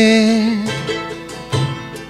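Live acoustic band music with violin and strummed guitar: a long held note with vibrato ends about half a second in, then chords are strummed over low bass notes.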